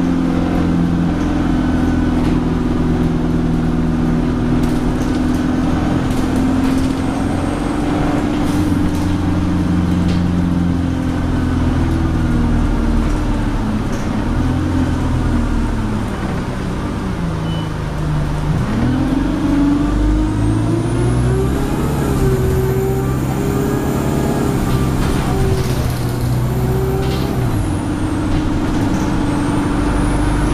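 Alexander Dennis Enviro200 single-deck bus heard from inside the saloon: its diesel engine runs steadily, drops in pitch as the bus slows through a roundabout about halfway through, then climbs again as it pulls away. A high whine rises with the acceleration, holds, and falls away near the end.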